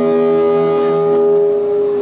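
Electric guitars held ringing through the amplifiers of a live rock band, a steady sustained note with a lower drone underneath that fades out about a second and a half in.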